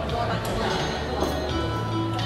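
Background music with sustained bass notes that change pitch about one and a half seconds in, over the murmur of many people talking in a crowded dining room.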